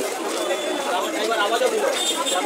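Crowd chatter: many people talking at once, with overlapping voices.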